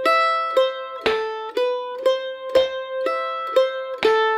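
F-style mandolin picking a slow, even run of single notes, about two a second, each ringing on until the next. These are the straight eighth notes of a jig measure in G, picked down-up-down, down-up-down to bring out the two pulses.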